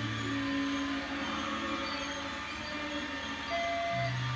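Music with held notes over a steady running noise from a battery-powered toy train circling its track.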